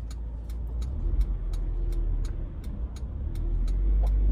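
Car waiting at an intersection, heard from inside: a low idle rumble, with other cars passing across in front and swelling in level about a second in and again near the end. A light, steady ticking runs throughout at about four ticks a second.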